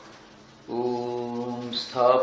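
A man's voice begins chanting a mantra about two-thirds of a second in, holding one steady pitch.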